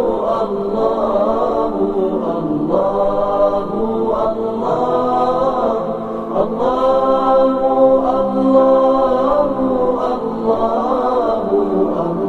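Islamic devotional dhikr chant, "Allah" sung over and over in long, drawn-out phrases of a few seconds each.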